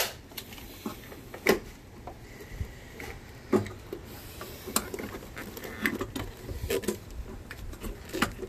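Scattered clicks, knocks and rubbing from a stiff wiring harness, its plastic loom and connectors being handled and worked into place by hand, with about half a dozen sharper knocks among softer rustling.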